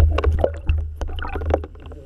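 Underwater churning rumble with a rapid series of knocks and clicks as a pike strikes a soft-bait shad lure and the camera rig is jolted; it dies away shortly before the end.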